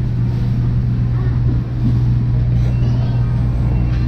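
Steady low hum of a large supermarket's background, with faint voices of other shoppers in the distance.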